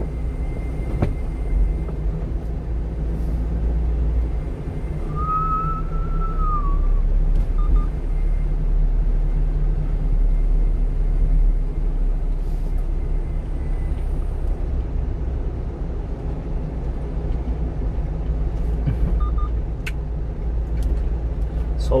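Steady low drone of a 1-ton refrigerated truck's engine and tyres, heard from inside the cab while driving slowly. About five seconds in there is a brief high squeal that rises and then falls.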